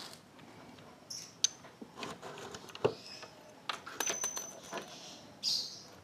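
Scattered light metallic clicks and clinks of a motorcycle engine's aluminium crankcase half and its transmission gears being turned over and handled.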